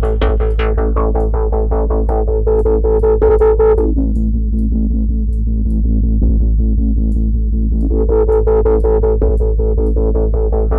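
A fast drum loop from the Groove Agent 5 drum plugin plays through its Tube Drive filter, with an even stream of hits over a steady bass hum. About four seconds in, the filter cutoff is swept down: the loop turns dull and muffled, and a resonant ringing tone drops in pitch. Near eight seconds the cutoff is opened again, and the brightness and the ringing tone rise back up.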